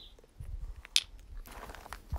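Stone pieces being handled: a few light clicks and a short rough scrape as cut lepidolite slabs are put down and a jasper slab is picked up, over a low rumble. The trim saw is not running.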